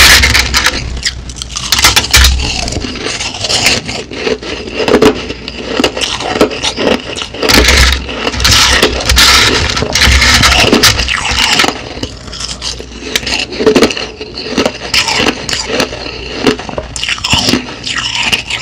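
Crushed ice being scraped and gathered by hand across a plate close to the microphone: a dense, irregular run of small clicks and crackles as the ice pieces shift and grind.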